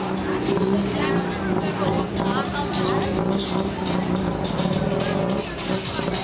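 Busy nightlife street ambience: music playing from bars, mixed with people's voices and a motor vehicle engine running.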